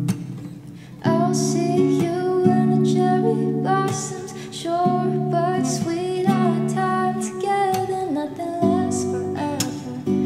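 Acoustic guitar played with a woman singing over it. Both drop to a brief lull over about the first second, then guitar chords and voice come back in and carry on.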